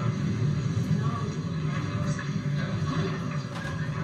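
A sitcom scene's soundtrack played through TV speakers into a room: background chatter with music under it.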